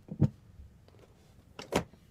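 Two short handling noises, bumps and rustles of microphones being handled: one about a quarter second in, the louder, and a second near the end.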